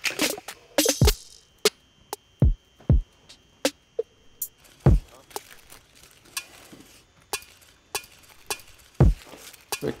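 Single electronic drum samples, deep kick thuds and sharp snare- and hat-like clicks, triggered one at a time at an uneven pace as a drum pattern is built in production software, not yet playing as a steady beat.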